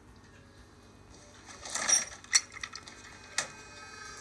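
A brief clatter of small clicks and clinks, loudest about two seconds in, with a few lighter clicks after and one more sharp click near the end.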